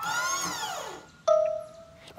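Cartoon soundtrack effect: a pitched tone that swoops up and back down over about a second, followed by a short held note.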